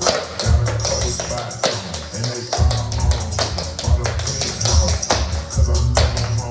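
Tap shoes clicking out quick rhythms on a wooden floor, over a hip-hop track with heavy, booming bass.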